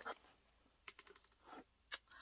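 Near silence, with a few faint rustles and clicks from a box being handled and held up.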